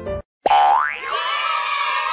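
Piano music cuts off, and after a brief gap an added comedy sound effect plays: a sudden rising whistle-like glide, then a held sound of several tones.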